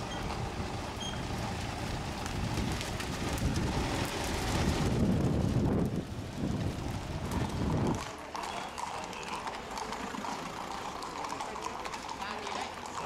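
Several horses' hooves clip-clopping at a walk on a paved street as a mounted procession passes, with a low rumble under them that stops abruptly about eight seconds in.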